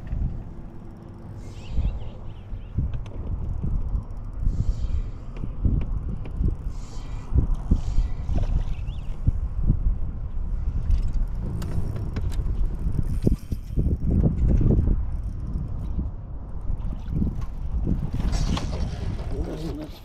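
Spinning reel cranking and clicking while a largemouth bass is fought on a bent rod, over uneven wind rumble on the microphone. A burst of splashing shortly before the end as the bass is lifted out of the water.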